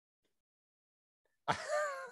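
Near silence, then about one and a half seconds in a man breaks into a laugh.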